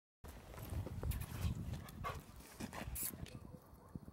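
A dog's sounds close by, among low rumbling and a few short sharp noises, with a brief hiss about three seconds in.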